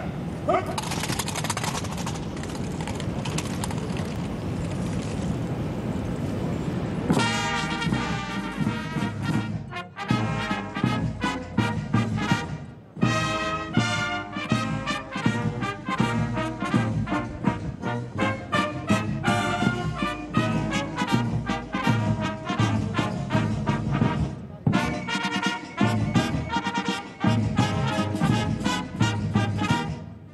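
A military brass band plays a national anthem, opening with about seven seconds of a steady drum roll before the full band comes in with the melody.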